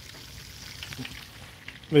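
Chicken frying in oil in a steel pot on an electric stove: a faint, steady sizzle with a few small pops.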